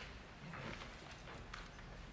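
Faint footsteps clicking on a wooden floor, about three steps a second.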